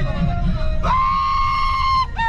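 A group of young people shouting and cheering inside a bus, with one voice holding a long, high-pitched yell from about a second in. The bus's low rumble runs underneath.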